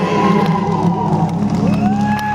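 Live rock band playing on stage: an electric guitar over steady held low chords, with a note that slides up in pitch near the end.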